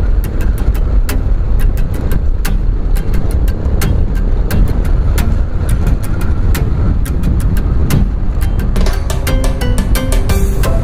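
Motorcycle engine and wind noise while riding, a steady low rumble, under background music with a steady clicking beat; melodic notes come in near the end.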